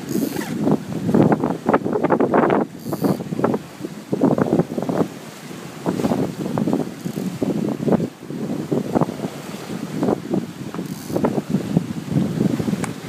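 Wind buffeting the microphone in uneven gusts, over the rush of water along the hull of a 1720 sportsboat sailing fast downwind.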